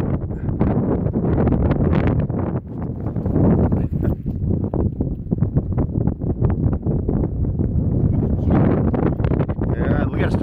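Wind buffeting a phone's microphone: a loud, low rumble that gusts up and down without let-up.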